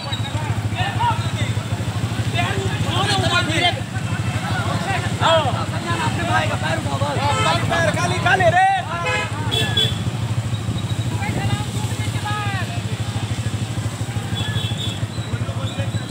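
A steady engine drone runs throughout, with distant voices calling out over it now and then.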